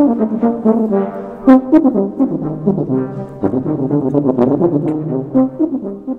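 Tuba played solo in a quick run of short notes, moving to lower held notes about three and a half seconds in.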